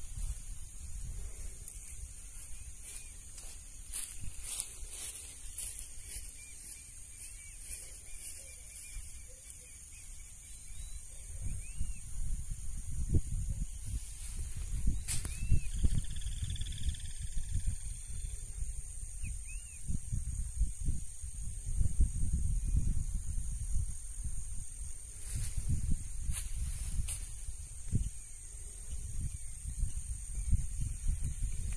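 Outdoor wind ambience: wind rumbling on the microphone, strongest from about twelve seconds in, over a steady high hiss. A few faint short chirps are heard.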